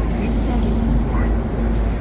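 Low, steady rumble of city traffic with a steady hum and faint voices in the background.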